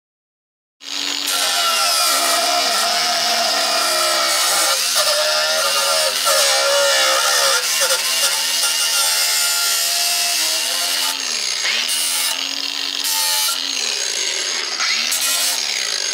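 Small angle grinder cutting through a rear brake-disc heat shield, starting about a second in and running continuously. Its pitch sags and recovers several times as the disc bites into the metal.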